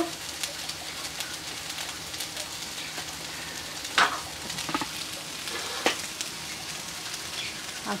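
Sliced sausage and onion frying in oil in a pan: a steady sizzle, with a few sharp pops about four seconds in and again near six seconds.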